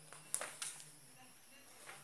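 Paper invoice sheets being handled and put down, with one sharp tap about a third of a second in and a couple of softer clicks after it.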